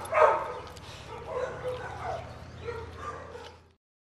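Dog whining and yipping in short, high, pitched calls, loudest just after the start and softer after that. The sound cuts off suddenly shortly before the end.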